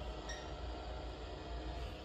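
Quiet room tone: a steady low hum with no distinct sound.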